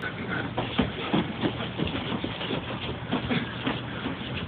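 Irregular knocks and clicks of objects being handled and moved about, over a low steady hum.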